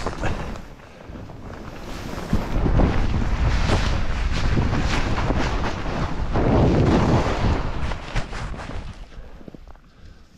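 Wind buffeting the microphone of a skier on the move, with the hiss of skis sliding through snow. The noise builds about two seconds in, holds, and eases off near the end as the skier slows.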